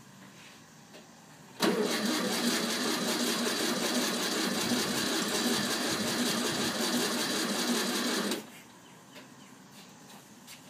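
The air-cooled flat-four of a 1964 VW Beetle being cranked over by its starter, without firing. It runs evenly for about seven seconds, starting about a second and a half in and cutting off suddenly. The engine has sat unused for more than ten years.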